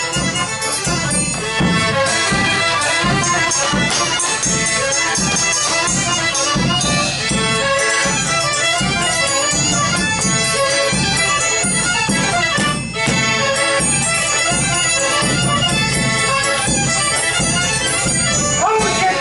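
Polish folk band playing a fast Opoczno oberek in triple time: a fiddle leads over the regular strokes of a baraban drum.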